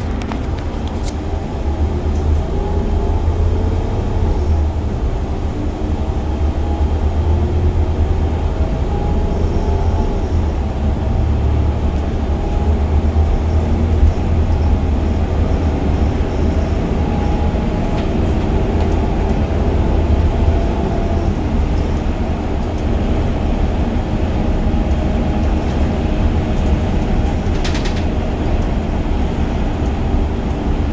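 Gillig Advantage LF transit bus heard from the driver's seat: a deep engine and drivetrain rumble that rises in pitch as the bus pulls away and gathers speed, then runs steadily at cruising speed.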